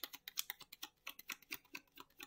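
A deck of tarot cards being hand-shuffled, the cards slapping and ticking against each other in a quick, even run of about six or seven clicks a second.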